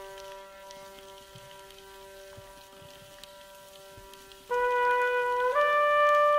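Orchestral music: a soft, held chord with faint scattered clicks, until about four and a half seconds in a trumpet enters loudly on a held note and steps up in pitch about a second later.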